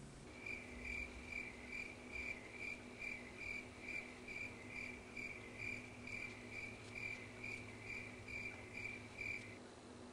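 Faint, high chirp repeating evenly about twice a second over a low steady hum. The chirping stops shortly before the end.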